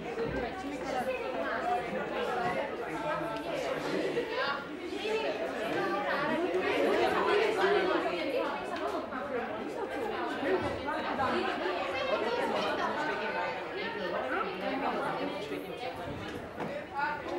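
Many students' voices talking over one another: classroom chatter with no single clear speaker.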